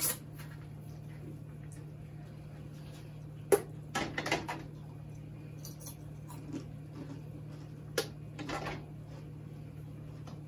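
Glass canning jars knocking against the metal of a pressure canner as they are set in: two sharp clinks about four and a half seconds apart, each followed by a brief clatter, over a steady low hum.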